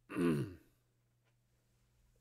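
A man's short throat-clear, about half a second long with a falling pitch, right at the start. After it there is only a faint steady electrical hum.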